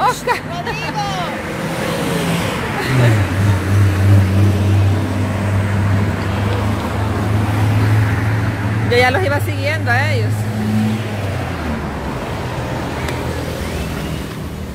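Road traffic: a motor vehicle engine's low, steady drone, rising in about three seconds in and dying away just before the end, over the general noise of the road. Short snatches of voices are heard briefly near the start and again about two-thirds of the way through.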